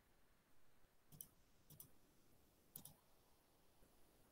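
Three faint computer mouse clicks over near silence, about a second, a second and a half, and nearly three seconds in.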